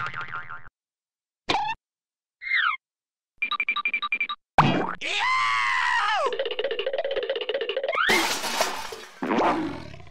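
Cartoon sound effects: a quick run of short boings, zips and a fast rattle, then a sudden hit about four and a half seconds in, followed by wobbling, warbling tones and a rising rush near the end.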